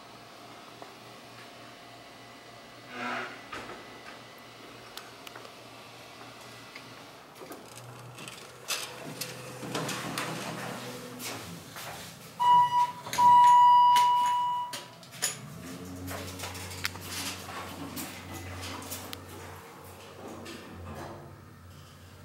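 Dover/ThyssenKrupp hydraulic elevator in operation. Its doors slide, then an electronic signal sounds as two short beeps and one longer, louder tone. After that the hydraulic pump motor starts a low, steady hum as the car moves.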